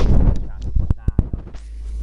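Handling noise from a camera being moved and set down on a car dashboard: rubbing and bumping on the microphone, then a few sharp clicks about a second in.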